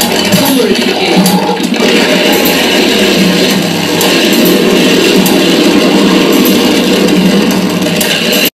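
Loud live noise music from DIY electronic instruments: a dense, harsh wall of noise with scattered clicks and a brief gliding tone in the first couple of seconds, then a steady, unbroken wash of noise.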